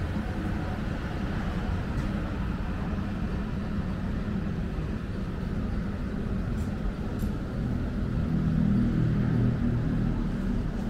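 Steady city street ambience at night: a low, even rumble of distant traffic and urban noise, swelling a little near the end.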